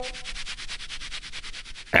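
A rapid, even rasping, about ten strokes a second, that stops just before the end. At the very start the tail of a held brass note fades out.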